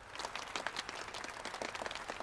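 Applause: many hands clapping at once in a dense, irregular patter that starts a moment in and keeps going.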